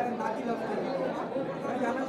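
Indistinct chatter of several people talking at once, with no clear single voice.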